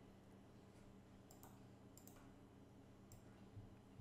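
Faint computer mouse clicks, three or four spaced about a second apart, over a low steady electrical hum.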